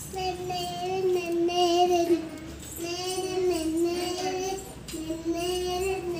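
A child singing a tune in long, held notes, in three phrases with short breaks between them.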